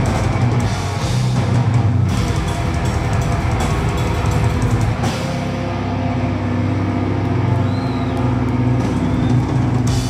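A death metal band playing live, with distorted electric guitars, bass and drum kit. About halfway through, the high end drops away and low chords are held, then the full band crashes back in at the very end.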